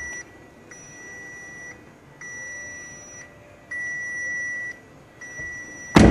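2013 VW Beetle's warning chime beeping steadily in high, even tones of about a second each with half-second gaps, the alert that sounds with the ignition on and the driver's door open. The door is shut with a thud at the very end.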